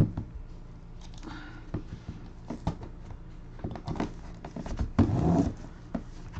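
Hands handling a shrink-wrapped cardboard box: scattered taps, clicks and plastic rustles. There is a louder knock at the start and a burst of heavier handling about five seconds in.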